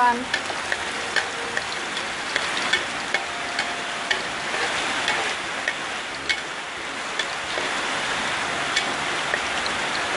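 Chopped garlic sizzling in a little oil in a wok, being fried until golden. A steady sizzle runs throughout, dotted with the clicks and scrapes of a metal ladle stirring against the pan.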